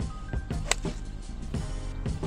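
Background music with a steady beat, and about two-thirds of a second in, a single sharp click as a golf club strikes the ball off the tee.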